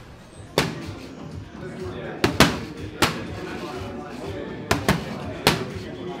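Boxing gloves punching focus mitts: seven sharp slaps in combinations. A single one comes first, then a quick double just after two seconds, one at three seconds, a quick double near five seconds and a last one shortly after.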